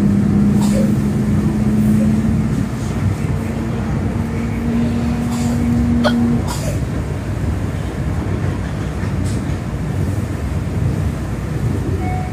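Electric commuter train running, heard from inside a passenger car: a steady rumble with a low hum that cuts off a little past halfway.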